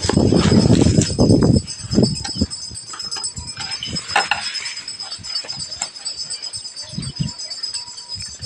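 Black plastic wrapping rustling and crackling loudly as it is pulled off a cardboard box for about the first second and a half. Scattered light taps and scrapes of the box being handled follow.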